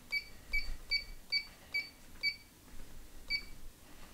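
LifeSpan TR1200 desk treadmill console beeping at each press of its speed-up arrow key as the belt speed is raised to 2.5 mph: six short high beeps at about two and a half a second, then one more after a pause.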